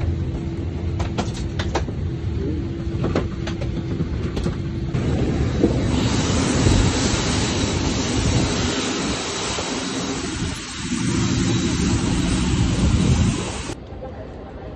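Airliner cabin noise as the plane taxis after landing: a steady low hum with several sharp clicks in the first few seconds. From about six seconds in, a louder, wider rush of engine and air noise takes over.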